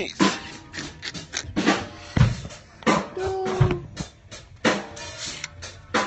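A drum kit being played, with kick drum and snare hits landing at uneven intervals.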